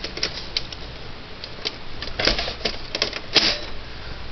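Irregular plastic-and-metal clicks and rattles as the optical drive assembly of a Dell Optiplex GX520 is handled and set back into the case, with a louder click near the end. Underneath is the steady low hum of the running computer.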